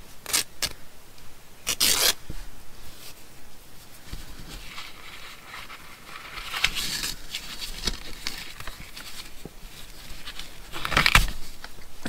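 Handling noise of a strip of sari-silk fabric being threaded and knotted through a paper card: rustling and scraping of fabric against card. Short sharp rasps come near the start and again near the end, with a longer stretch of rustling in the middle.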